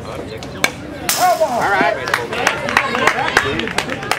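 A pitched baseball pops sharply into the catcher's leather mitt about a second in: a called or swinging strike. Several spectators' voices call out after it.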